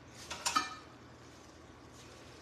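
A brief light clink of a utensil against a dish about half a second in, then quiet room tone.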